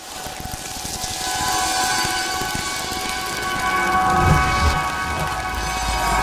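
Sound design of a station-ident sting: a noisy, rumbling whoosh with a sustained electronic chord of several steady tones fading in over it. The rumble swells in the second half.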